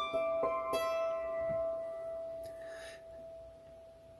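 Hammered dulcimer strings struck with hammers: three quick notes of a C chord pattern in the first second, then the notes ring on and slowly die away.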